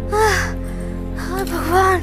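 A woman moaning in pain from a headache: two or three harsh, drawn-out rise-and-fall cries over background music.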